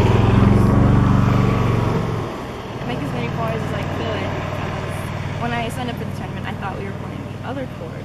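An engine running close by with a low, steady drone, loudest for the first two seconds and then dropping off sharply to a quieter steady hum under a girl's speech.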